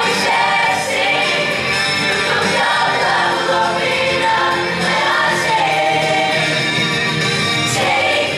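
Mixed-voice high school show choir singing together in full voice, steady and loud, with musical accompaniment.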